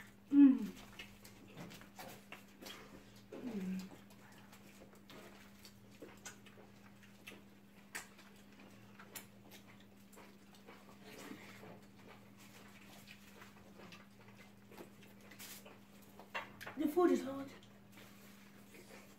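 Short vocal murmurs from people eating, the loudest about half a second in with a falling pitch, others near 3.5 s and 17 s, over faint scattered clicks and smacks of eating by hand and a steady low hum.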